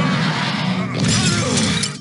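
Loud crashing and shattering from an animated film's soundtrack, in two spells about a second apart, with orchestral music underneath.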